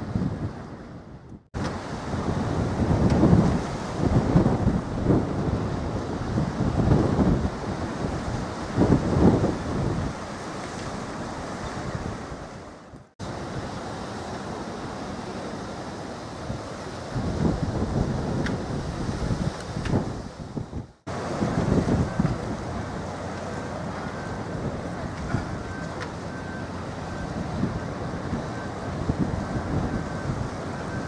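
Wind buffeting the microphone in gusts over the steady wash of the sea. The sound cuts out abruptly three times, about a second and a half in, about halfway through and about two-thirds of the way through.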